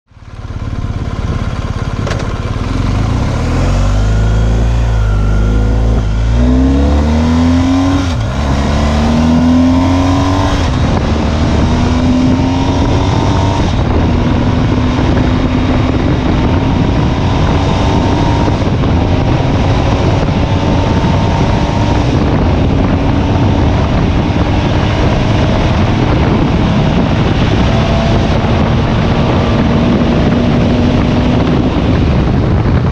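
BMW R1250GS Adventure's 1254 cc ShiftCam boxer twin accelerating hard under full throttle, its pitch rising and dropping back at each upshift: quick shifts in the first ten seconds, then longer, slower pulls in the higher gears toward about 200 km/h. Wind rush on the onboard microphone grows with speed.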